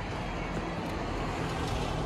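Steady road traffic noise from vehicles on a nearby street, an even rumble with no single event standing out.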